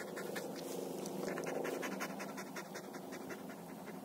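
Samoyed panting in quick, even breaths.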